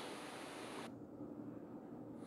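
Faint steady background hiss of a recording's room tone, with no other sound; the higher part of the hiss drops away about a second in.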